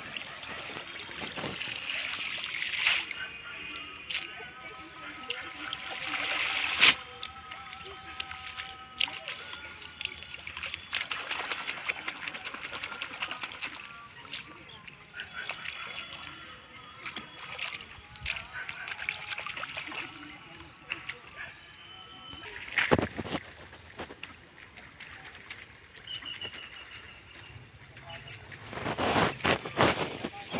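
Water sloshing and splashing as a man wades through a pond, with voices in the background and a few sharp knocks.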